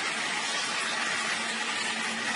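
Small electric water pump running with water rushing through the piping of a process-control training unit: a steady rushing hiss with a faint constant hum, the flow building up.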